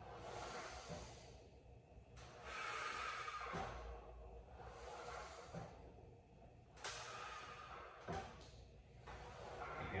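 Faint breathing of a man exercising, a series of slow breaths in and out, about one every two seconds, paced with his repetitions.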